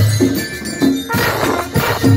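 Marching band playing in the street: bugles and trumpets hold notes over drum beats, with cymbal crashes coming in about a second in.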